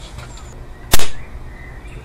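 .177 airgun firing a dart: a single sharp shot about a second in, with a short tail.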